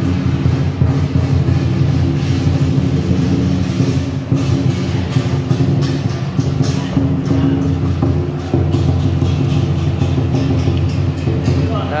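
Electric blower fan keeping an inflatable arch inflated, running with a loud, steady hum.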